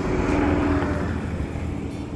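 A bus driving past close by and pulling away, its engine a loud low rumble that slowly drops in pitch and fades over the second half.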